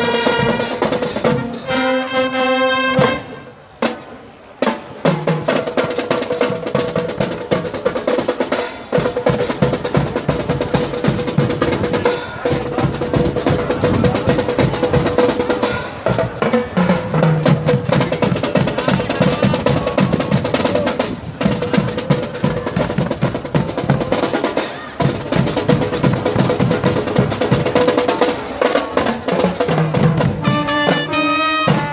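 Marching band (banda marcial) playing: a held brass chord that cuts off about three seconds in, then after a brief pause a long, fast drum cadence of snare and bass drums with one steady note held beneath it.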